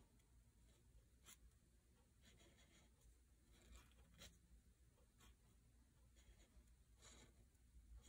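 Faint scratching of a felt-tip marker pen writing a kanji on paper, stroke by stroke: short strokes at uneven intervals, roughly one every second.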